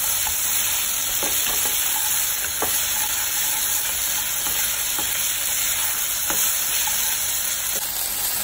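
Diced vegetables (bell peppers, onion, broccoli, corn) sizzling in a hot pan as a spatula stirs and turns them, with a few light scrapes and taps of the spatula against the pan.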